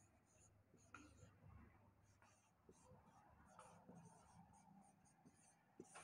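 Faint squeaks and short strokes of a marker writing on a whiteboard, a run of brief scratches with a few small taps.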